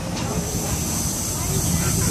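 Passenger train running along the track, heard from an open carriage window: a steady rumble of wheels on rail, with a steady high hiss that comes in just after the start.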